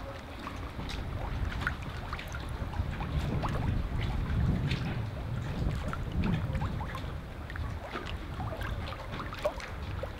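Outdoor ambience on the water: a steady low wind rumble on the microphone with many short scattered ticks and chirps over it.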